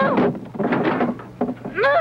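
A person's voice crying out in wavering, quavering wails, one at the start and another near the end, with short knocks in between.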